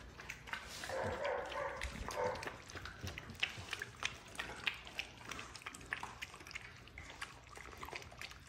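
Bandog puppies eating a wet raw mix of meat and green beans from a metal pan: many quick wet lapping and chewing clicks, with a faint brief whimper about a second in.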